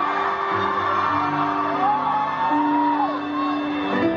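Live concert music: the instrumental close of the pop ballad, with steady held notes. Partway through, one long whoop from the audience rises and falls over the music.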